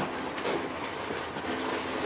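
A small knife scraping and paring the stem of a porcini mushroom, a steady scratchy rasp with light rustling of the plastic bag beneath.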